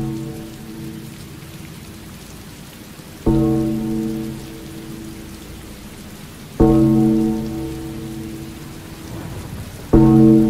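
Steady rain sound effect, with a deep ringing musical hit landing about every three and a third seconds, three times, each struck suddenly and fading away.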